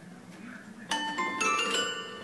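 A cat pawing the keys of a toy piano: after a quiet first second, about four bright notes struck in quick succession, each ringing on and overlapping the next.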